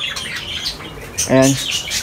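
Caged pet birds chirping and squawking in quick, high calls.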